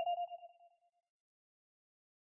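A single held note from the Synth1 software synthesizer, a clean tone with one faint overtone, fading out within about the first second. Dead digital silence follows.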